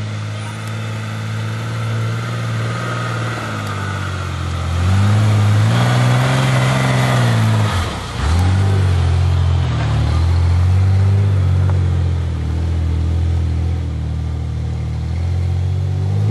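4x4 pickup truck's engine revving hard under load on a slippery hill climb. The revs climb about five seconds in, drop briefly near eight seconds, then are held high again.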